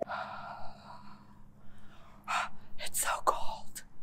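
A woman's long, breathy sigh, then several short, sharp breaths through clenched teeth near the end, the sound of someone shivering in the cold.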